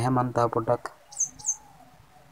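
A man speaking for under a second, then two short, high, falling bird chirps a little over a second in, followed by a brief lull.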